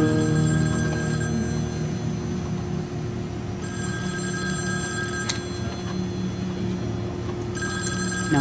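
Mobile phone ringing with an electronic ringtone: three rings of about two seconds each with short gaps, over a low steady hum.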